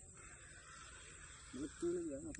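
A faint steady outdoor hiss, then a person's voice briefly near the end.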